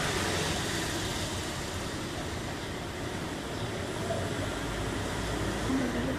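Steady rushing background noise, like distant traffic, with faint wavering pitched sounds in the last couple of seconds.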